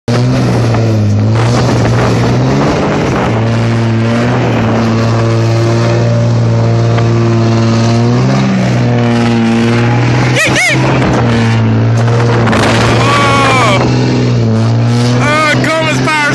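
Straight-piped 3rd-gen Cummins inline-six turbo-diesel held at high revs under heavy load, its tyres spinning on ice while towing a semi tractor; the engine note dips briefly three times. Shouts and whoops come in near the end.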